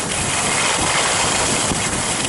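Steady rush of wind on a helmet camera's microphone while skiing fast downhill, mixed with telemark skis scraping over groomed snow.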